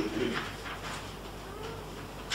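A few short, scratchy strokes of writing on a board, with a faint brief arching tone about one and a half seconds in.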